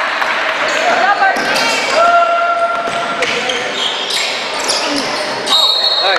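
A basketball dribbled on a hardwood gym floor, with repeated sharp bounces, while players call out to each other during play.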